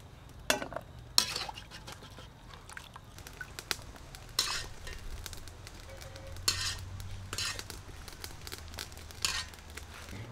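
A wire skimmer scooping blanched bell pepper pieces out of a wok of hot water and tipping them onto a metal plate. It makes about six short scraping, rattling sounds spread across the stretch.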